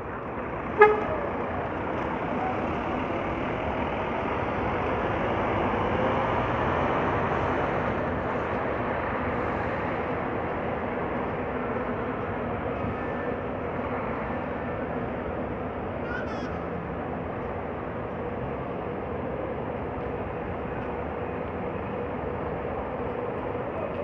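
A short horn toot from a double-decker coach about a second in, then the coach's engine and road noise swelling as it pulls away and drives off, fading into steady city traffic noise.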